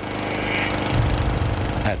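Small petrol lawn mower engine running steadily, swelling louder over the first second and then holding with a heavy low rumble.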